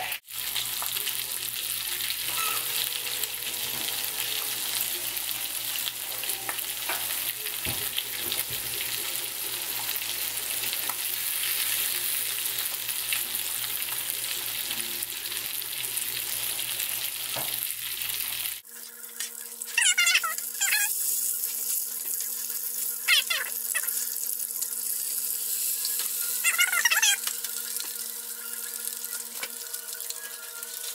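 Strips of bacon frying in a small nonstick skillet on an electric coil burner: a steady crackling hiss of sizzling fat. About two-thirds of the way through the sound cuts abruptly and the sizzle carries on over a steady low hum, with a few brief high squeaks.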